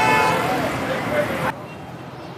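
A vehicle horn toots briefly at the start over busy street traffic and background voices. The street noise drops off suddenly about one and a half seconds in.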